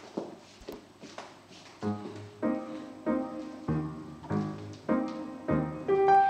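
Piano music starts about two seconds in, with chords struck on a steady beat roughly every 0.6 seconds. Before it there is only faint room sound.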